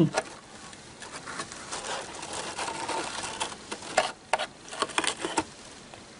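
Sewing machine stitching slowly through layers of tulle, with a cluster of sharp ticks about four seconds in.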